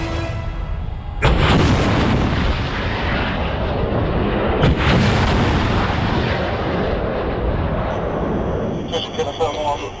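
RBS 15 anti-ship missile launch: a sudden blast about a second in, a sustained rushing roar of the rocket motor, and a second sharp blast a few seconds later, fading near the end.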